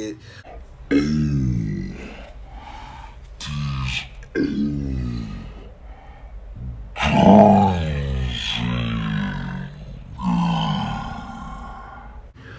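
A man grunting and groaning with effort during a workout, about five or six strained vocal sounds, each falling in pitch, spaced a second or two apart.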